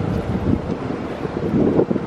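Wind buffeting the microphone: a low, uneven rumble that rises and falls.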